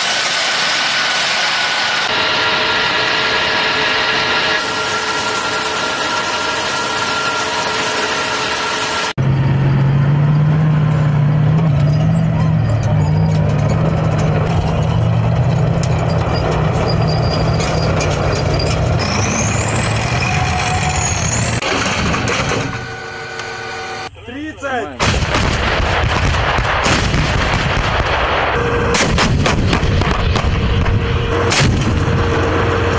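Jet engines of a white swing-wing bomber running with a steady whine as it lands with braking parachutes, cut off abruptly. Then comes the deep, steady rumble of a heavy armoured vehicle's engine, with a brief rising-and-falling whistle. About five seconds from the end, a rapid string of gunshots begins.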